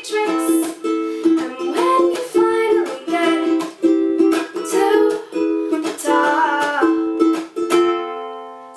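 Ukulele strummed in a steady, quick rhythm of chords, an instrumental passage with no singing.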